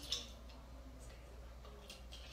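A short breathy sniff just after the start, over a quiet room with a faint steady low hum and a faint click near the end.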